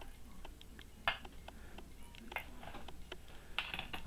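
Faint quick clicks and light taps, a few each second, with a sharper tap about a second in and another near the end.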